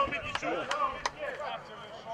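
Men shouting, with a run of sharp claps about three a second in the first second.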